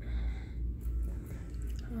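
Steady low rumble of a handheld phone being carried while walking, with faint indistinct voices and a few faint ticks above it.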